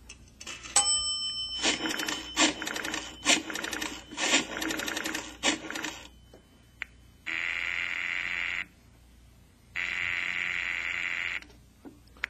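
Radio-drama sound effect of a telephone call being placed: a short ringing chime about a second in, then a few seconds of clicking and rattling as the phone is handled and dialled. Then two long rings on the line, each over a second, with a pause between them.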